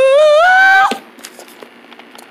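A high-pitched cartoon character voice singing out a long, rising 'achoo' note as a sneeze, which stops about a second in. A few faint clicks follow.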